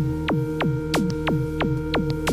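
Electronic music from a Novation Circuit groovebox: a held synth pad drone under a quick repeating percussive blip that drops sharply in pitch, about three a second.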